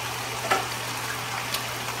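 Chicken breasts and vegetables frying in a skillet: a steady sizzle with two small pops.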